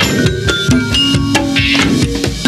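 Late-1960s rock studio recording in an instrumental passage: drum kit and hand percussion in a busy, steady rhythm, with short pitched keyboard and bass notes over it and no vocals.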